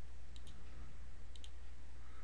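Computer mouse button clicking twice, about a second apart, each a quick press-and-release double tick, as polygon edges are selected one by one. A steady low hum runs underneath.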